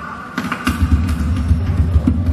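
Live percussion: a round hand drum struck fast with both hands. A dense, rumbling low roll builds up about half a second in, with sharp strikes over it.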